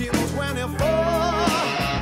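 Blues-rock music: an electric guitar plays sustained lead notes with wide vibrato over a band with bass and drums.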